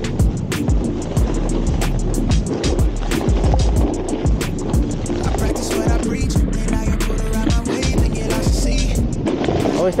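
Snowboard edges scraping and carving across snow, with a constant low rumble and frequent knocks and clicks on the action camera.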